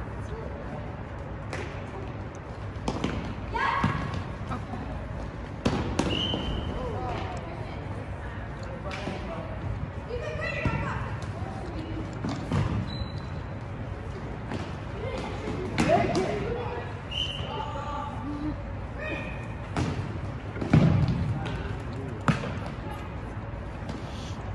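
Futsal ball being kicked and bouncing on a hard gym floor in a string of sharp thuds, the loudest about three seconds before the end, with brief sneaker squeaks and players' shouts and voices in the gymnasium.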